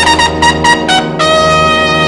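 Jazz big band brass, led by trumpets, playing a quick run of short, detached notes, then holding a long note from about a second in.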